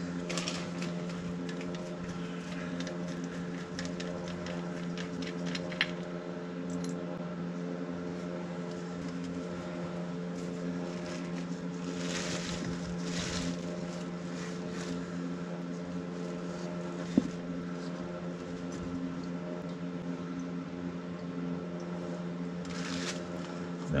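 A steady, low hum with several pitched tones runs under handling noises from an oil-burner fuel filter being taken apart: plastic bag rustling and light metal clinks as the filter bowl is unscrewed and lifted off, busiest about twelve seconds in, with a sharp click later.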